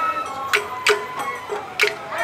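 Sawara-bayashi festival music: a high bamboo-flute melody over a few sharp, unevenly spaced percussion strikes.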